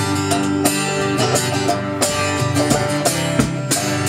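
Acoustic guitar strummed and picked in a steady rhythm, ringing chords playing the instrumental intro of a song before the vocal comes in.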